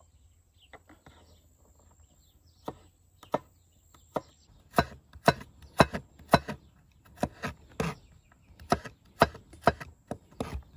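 Large kitchen knife chopping garlic cloves on a wooden cutting board. A few scattered knocks come first, then from about five seconds in a run of sharper, louder strikes, roughly two a second.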